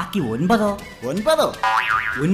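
Cartoon-style comedy sound effects: springy, boing-like pitch glides that swoop down and back up, then a short warbling effect that starts abruptly near the end, with snatches of voice in between.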